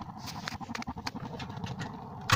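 Portable gas-cartridge radiant heater spluttering: rapid, irregular popping over a steady burner rush as the flame falters, the spluttering that comes before the heater dies out.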